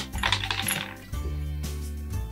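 Background music with a steady bass line, over which a click and a short glassy clinking rattle sound in the first second: a wire and crystal-crusted pom-pom knocking against a glass jar.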